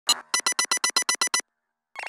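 A quick run of about ten short synthesized electronic bleeps, roughly nine a second, after a single opening blip. The run stops about a second and a half in.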